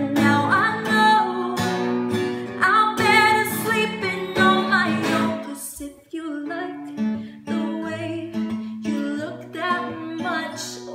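A woman singing a slow pop song while strumming a capoed cutaway acoustic guitar, with a brief break in the playing about six seconds in.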